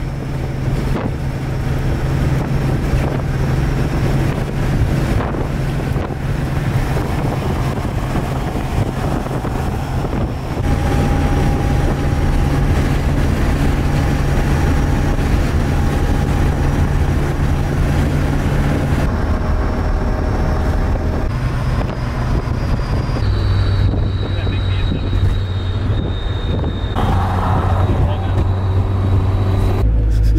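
Toyota AE86's engine and exhaust heard from inside the cabin while driving: a loud, steady low drone, with wind noise, that shifts in pitch at a few abrupt cuts.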